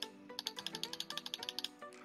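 Rapid run of small clicks from a computer's input (mouse or keys), about a dozen a second, lasting just over a second, over steady background music.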